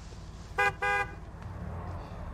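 Car horn honked twice in quick succession: a short blast, then a slightly longer one. It is an impatient signal for people blocking the road to move.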